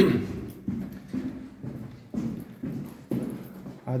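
A man's footsteps walking steadily, about two steps a second.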